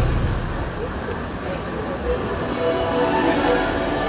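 Castle projection show's soundtrack over outdoor loudspeakers at a quieter, rumbling moment between music passages, with a few faint held notes in the second half.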